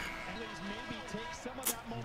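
Faint audio from a basketball broadcast playing in the background: distant voices with some steady music-like tones beneath. A single sharp click comes near the end.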